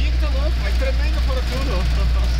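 Low, steady rumble heard inside the cab of a Ford Transit motorhome as it drives slowly up a ferry's internal vehicle ramp. The cabin shakes as the tyres run over the ramp's anti-slip surface.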